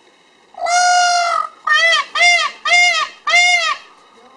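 Male Indian peafowl calling loudly: one long call held about a second, then four short calls in quick succession, each rising and falling in pitch.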